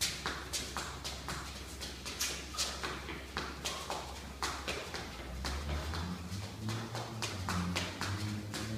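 Shadowboxing: a quick, uneven run of short, sharp sounds, several a second, from the boxer's punches and footwork, over a low hum.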